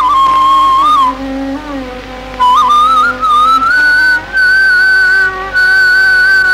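Bamboo flute playing a melody with sliding, bending ornaments between notes. The flute drops out about a second in while a quieter, lower accompanying tone carries on, then comes back about two and a half seconds in and climbs to long, held higher notes.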